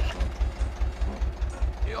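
Tractor engine idling with a steady low throb, about six beats a second, while the cultivator's clogged roller is being cleared.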